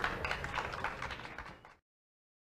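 Irregular knocks and shuffling in a hall, fading, then cutting off abruptly to total silence near the end.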